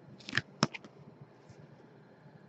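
Handling noise from a trading card in a rigid clear plastic holder being turned over: a short plastic swish, then one sharp click, followed by a few faint ticks.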